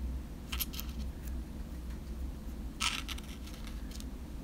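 Small die-cut cardstock pieces handled with fingertips on a craft mat: a couple of short, light clicks and rustles, about half a second in and again near three seconds.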